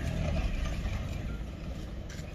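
A vehicle engine idling: a low, steady hum that slowly grows fainter.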